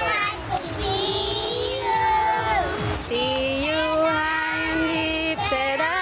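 Young children singing a song together, with long held and sliding notes, over a low steady beat of music.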